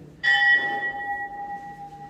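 A temple bell struck once, ringing on with clear steady tones that slowly fade.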